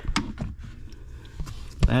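Handling noise from a truck door's wiring loom being fed through the door jamb: low rustling with a few light clicks and a sharper knock near the end.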